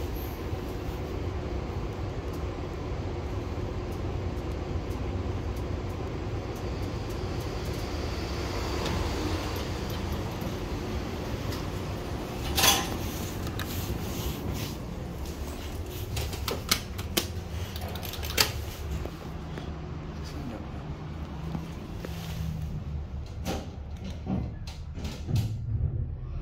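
2003 ThyssenKrupp hydraulic elevator running: a steady low rumble, with a loud click about halfway through. Several clicks and knocks come later, bunched near the end.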